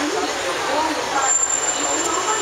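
Busy city street traffic, with buses and other vehicles, and passers-by talking. A thin, high, steady tone comes in a little over a second in.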